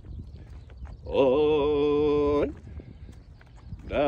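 A voice holding two long, steady notes, each about a second and a half, the first starting about a second in and the second just before the end.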